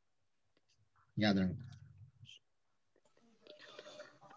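A short, loud voiced sound from a person, a brief 'eh' or 'hm', about a second in, tailing off with a few small clicks. Faint murmured voices follow near the end.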